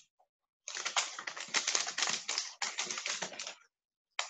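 A rapid run of small clicks and rustling noise lasting about three seconds, starting under a second in.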